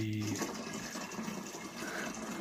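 Water running from a spring pipe into a plastic jerrycan, a steady splashing as the can fills.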